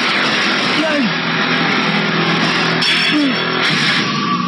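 Boxing arena crowd cheering, a dense steady roar with a few voices shouting over it.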